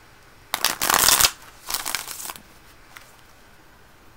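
Tarot cards being shuffled in two short bursts, the louder one about half a second in and a weaker one just after, as the deck is mixed before cards are drawn for the reading.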